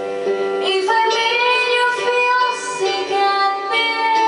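A woman singing into a handheld microphone over recorded backing music; her voice enters about a second in with long held notes.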